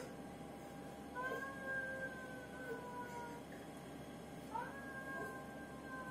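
A toddler's drawn-out vocal calls, two of them: the first starting about a second in, the second about four and a half seconds in, each held for about two seconds and sagging slightly in pitch.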